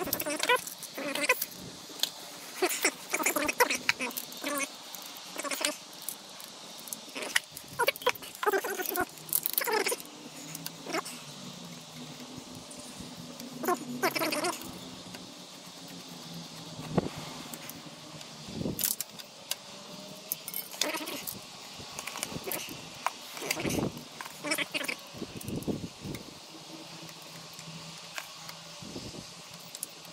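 Metal hand tools and bolts clinking and knocking, irregular clicks as T-handle hex keys are handled and engine-case bolts worked on a motorcycle, over a faint steady low hum.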